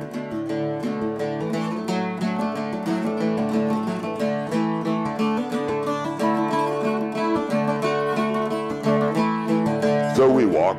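Archtop acoustic guitar played solo, picked notes and chords ringing in a steady rhythm with no voice.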